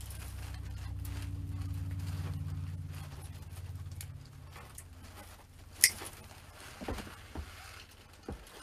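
Pine swag branches rustling as they are handled and fastened with a hand tool, with scattered small clicks and one sharp click just before six seconds in. A low steady hum sounds under the first half.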